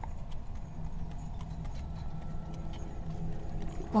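Street ambience of horse-drawn traffic: a low, steady rumble with faint, scattered hoof-like knocks.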